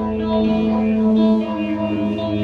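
Live rock band playing, with electric guitars holding long sustained notes through effects.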